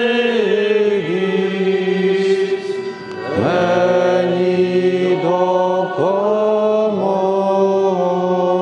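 Slow sung chant: voices hold long notes and slide to new pitches about once a second. There is a short break about three seconds in before the next phrase begins.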